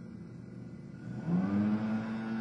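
A loud machine just outside the room starting up about a second in, its pitch rising quickly and then holding as a steady motor hum.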